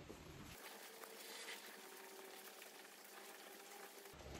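Near silence: a faint, even hiss of room tone.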